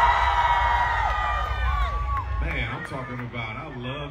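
Live hip-hop concert crowd yelling along over the PA's heavy bass, the held voices trailing off in the first half. The bass cuts out about two-thirds of the way through, leaving crowd noise and voices.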